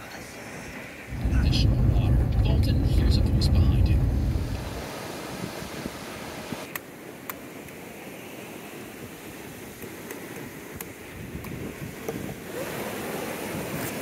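A loud low rumble lasting about four seconds, starting about a second in, then a quieter steady background with a few sharp chops of a knife blade into a green coconut.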